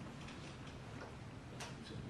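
Handling noise from a handheld microphone: a few faint clicks over quiet room tone, the clearest about one and a half seconds in.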